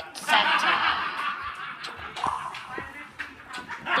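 A child's voice making playful non-word sounds with some snickering laughter, loudest in the first second and a half.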